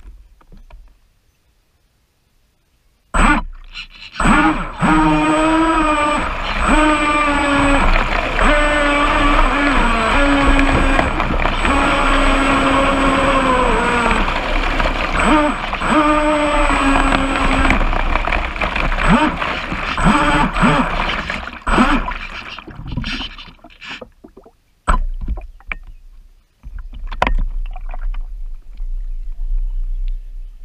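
Proboat Blackjack 29 RC speedboat's electric motor running from about three seconds in to about twenty-two seconds, its pitch wavering up and down with throttle and a thin high-pitched whine held over it. After it cuts out, scattered knocks and splashes follow as the boat is handled.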